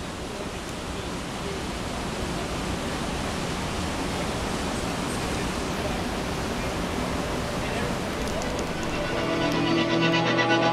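A dense, even wash of sustained electric-guitar noise from a mass of guitars, slowly swelling. Held pitched tones come through clearly near the end.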